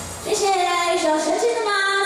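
A woman singing into a microphone, amplified through a PA. The band backing drops away at the start, and about a third of a second in she sings one long held line that bends up and down in pitch.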